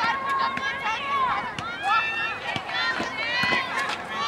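Several high-pitched voices calling and shouting across an open field, overlapping one another, with no words made out.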